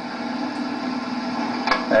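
Steady low hum inside a slowly moving car's cabin, with one short click near the end.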